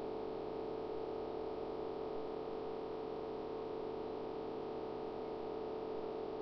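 A steady electrical hum, one held mid-pitched tone over a faint hiss, unchanging throughout.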